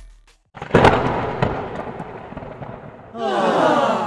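Outro sound effects: a sudden loud burst about half a second in that dies away over a couple of seconds, then near the end a short noisy sound that falls in pitch and fades out.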